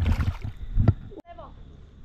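Water splashing and sloshing in a river's shallows as a trout is released by hand, with a sharp knock a little under a second in; the sound cuts off abruptly just past a second.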